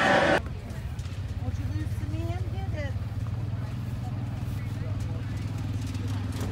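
An engine running at a steady, even idle with a low hum, with faint distant voices about two seconds in. At the very start, a louder indoor din cuts off suddenly.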